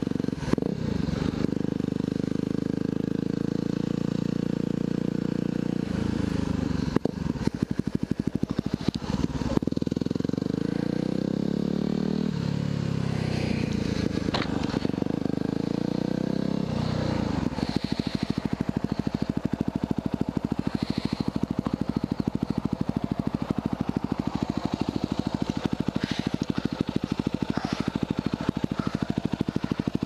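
A 2010 Yamaha WR250R's single-cylinder four-stroke engine, breathing through an FMF Q4 full exhaust, runs at a steady speed. Between about 7 and 17 seconds in it is shifted and revved up and down, then for the last dozen seconds it idles with an even, rapid pulse.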